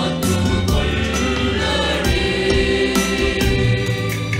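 Mixed choir of men's and women's voices singing in harmony, with instrumental backing that carries a strong bass line.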